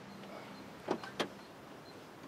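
Two short clicks about a third of a second apart, over a steady faint background hiss.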